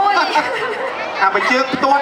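Speech only: people talking into stage microphones, amplified over the sound system.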